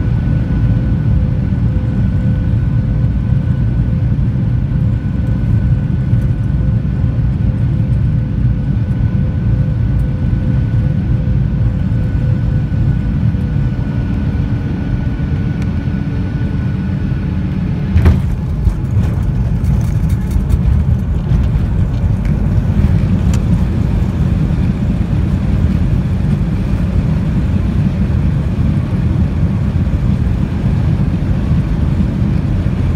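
Jet airliner heard from inside the cabin on final approach: a steady engine drone with a faint whine that eases down shortly before a sharp touchdown thump about 18 seconds in. After it comes a rougher, rattling rumble as the plane rolls along the runway.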